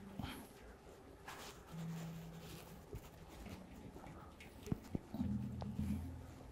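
Steel handpans being handled as they are swapped on their stands: faint contact sounds, a brief low ring from a shell about two seconds in, and a couple of light clicks near the end.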